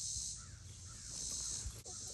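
Outdoor summer ambience: a high insect drone that swells and fades about every second and a half, with a few faint bird calls.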